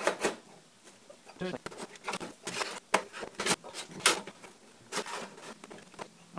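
Repeated sharp metal clicks and knocks as the aluminium optical-drive bay parts of a 2008 Mac Pro are pushed and worked back into place, a lip on the left side not catching at first.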